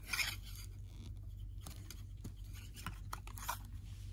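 A plastic action figure and its small accessories being handled: a short rustle at the start, then a few light, scattered plastic clicks and taps.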